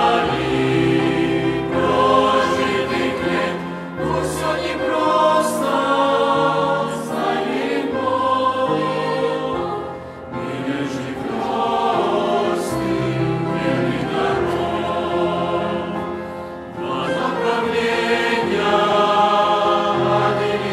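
A mixed youth choir of young men and women singing a hymn in Russian in parts, in sustained phrases with short breaks between them.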